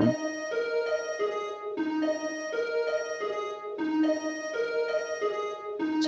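Sonification of a star's X-ray signal from the Hydra binary star system: a line of sustained, keyboard-like synthesized notes in a clave rhythm, the short pattern repeating about every two seconds.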